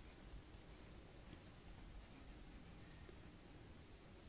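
Faint scratching of a pen writing on a paper workbook page, just above room tone.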